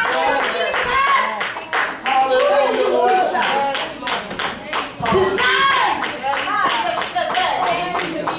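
Congregation clapping hands throughout, with voices calling out and singing over the clapping.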